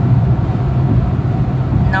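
Chevy Spark's cabin at highway speed: a steady low engine and road drone with an even hiss of tyre and wind noise over it.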